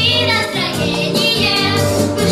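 A small group of young girls singing a song together into stage microphones, over a musical accompaniment with steady low notes.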